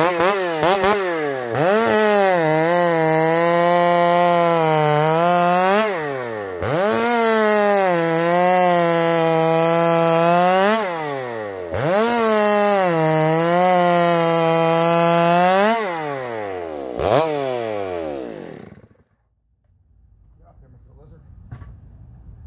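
Ported Stihl 084 two-stroke chainsaw, about 130 cc, making three long cuts through a log. Each time, the engine revs up, drops in pitch as the chain bites and holds under load for about four seconds, then climbs back up between cuts. Near the end it blips once, runs down and is shut off.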